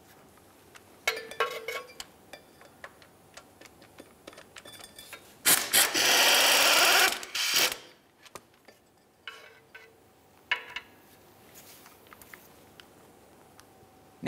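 A ratchet on a socket extension loosening the starter's upper 15 mm mounting bolt: scattered clicks and short bursts of ticking, with one loud, even burst about two seconds long near the middle.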